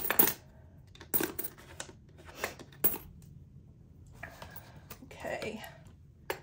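Loose coins clinking in a small zippered pouch as they are handled, in several short separate jingles, with rustling of the pouch between them.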